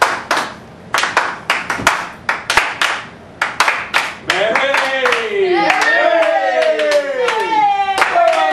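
Hands clapping in sparse, uneven claps. About four seconds in, several voices join with long falling "woo" cheers while the clapping goes on.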